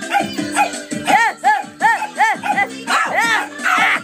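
Music with a steady beat. Over it, a dog gives a quick run of about five short yips, each rising and falling in pitch, starting about a second in.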